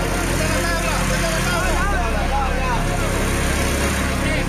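Steady vehicle engine rumble and road noise, with scattered voices of people talking in the background.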